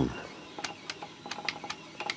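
A string of faint, light clicks from about half a second in: an automaton's solenoid-driven mouth snapping open and shut, with a felt pad damping the jaw so it hardly clacks.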